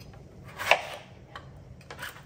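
Chef's knife cutting through a ripe tomato and knocking down onto a plastic cutting board: one sharp knock about two-thirds of a second in, then a few light taps.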